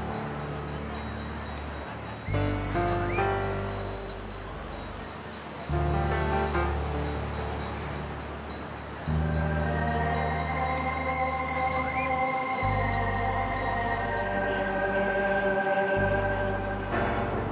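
Background music score of slow sustained chords, with a new deep bass note entering every three to four seconds and higher held notes joining about nine seconds in.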